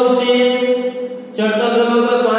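A voice chanting on long, steady held notes. It fades out about a second in and starts again a moment later.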